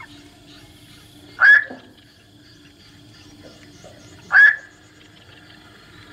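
Two short, harsh night heron calls, about three seconds apart, over a faint steady drone.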